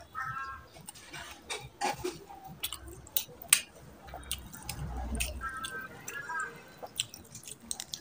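Wet clicks and squelches of open-mouthed chewing and of curry-soaked chicken being torn apart by hand, with a dull low thump about five seconds in.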